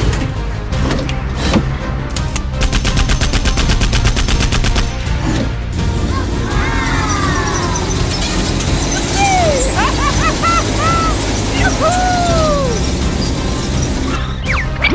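Background music, with a rapid machine-gun rattle from the toy tank's mounted gun lasting about two seconds, starting about two and a half seconds in. Later come sliding, whistle-like tones that bend up and down.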